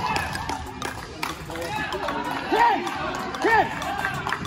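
Voices calling out in an indoor soccer arena: two drawn-out shouted calls in the second half, over background crowd chatter and scattered light knocks.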